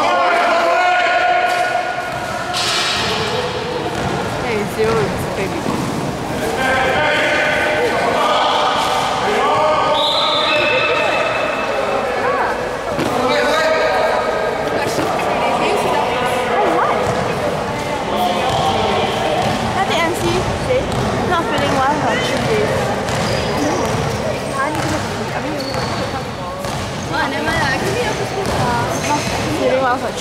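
Basketball game: a ball bouncing on a hard court, mixed with players' and onlookers' shouts and chatter.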